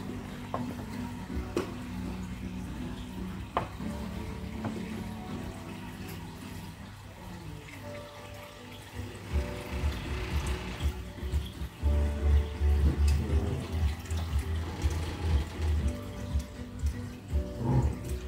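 Water being poured from a plastic tub into a glass aquarium, a light splashing rush about halfway through. It sits under background music with held notes, and a heavy bass beat comes in about two-thirds of the way through.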